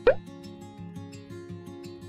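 Light background music with plucked guitar notes; right at the start a short, loud pop sound effect that falls quickly in pitch.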